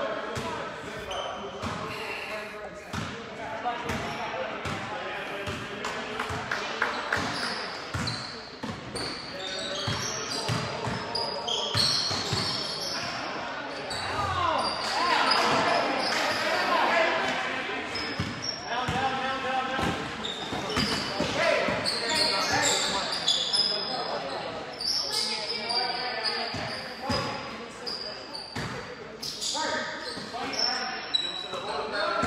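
Basketball game sounds in a gym with a hard echo: a basketball bouncing on the hardwood floor, many short thuds through the whole stretch, with short high sneaker squeaks and players, coaches and spectators calling out.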